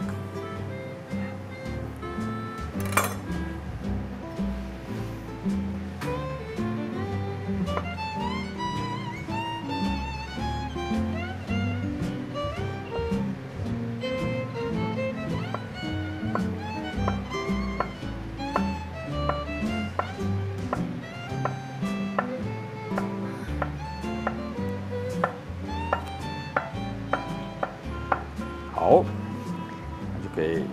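Background music with a melody over a steady bass line. Under it, light taps of a chef's knife on a wooden cutting board as it slices through a block of soft tofu, one sharper tap about three seconds in and more frequent taps in the second half.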